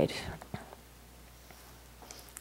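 A pause in a talk: the last spoken word fades out in the room's reverberation, then quiet room tone with a steady low hum and one faint click about half a second in.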